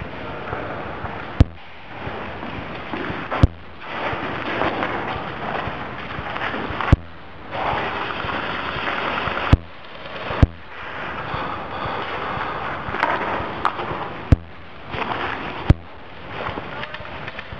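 Rustling and handling noise from a player moving through undergrowth, broken about seven times at uneven intervals by a single sharp crack, typical of an airsoft replica firing close by.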